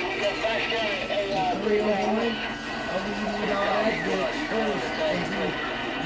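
Indistinct voices talking continuously, with music playing underneath.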